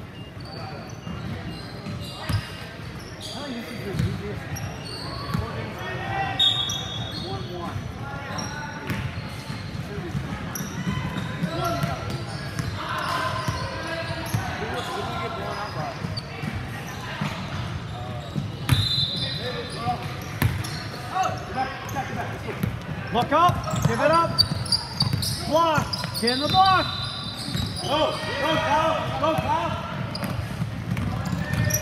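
Basketball game in a big gym: the ball bouncing on the hardwood floor, sneakers squeaking, and players and spectators calling out, all echoing in the hall.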